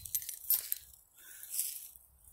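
Footsteps crunching and rustling through leafy undergrowth on the forest floor: a few soft, separate crunches.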